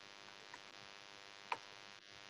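Faint computer keyboard clicks as a word is typed, with one louder click about one and a half seconds in, over a steady faint hum.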